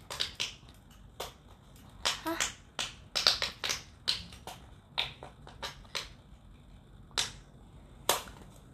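A run of sharp, irregular clicks and taps close to the microphone, some in quick pairs and clusters, with no voice between them.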